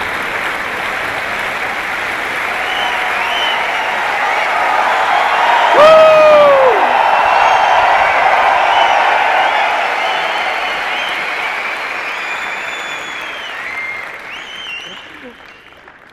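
A large audience applauding and cheering. The clapping builds to its loudest about six seconds in, with a loud falling whoop, then slowly dies away.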